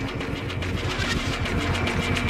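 Electronic bass music from a DJ mix: a steady deep bass drone under rapid clicking glitch percussion, with a thin high tone held throughout.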